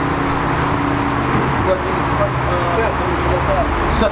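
Street traffic: a motor vehicle passing close by, a steady, loud noise of engine and tyres, with faint voices underneath.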